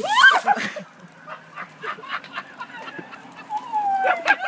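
A loud, high-pitched shriek right at the start, then scattered crackling and rustling of hedge branches as a person falls into a clipped hedge. A second wavering cry comes near the end.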